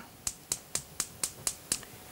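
Gas range burner igniter clicking in an even series, about four clicks a second, as the back burner is lit.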